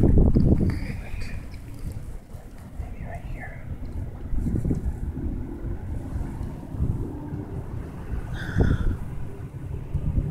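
Wind buffeting the camera's microphone: a low, uneven rumble with gusts, loudest in the first second.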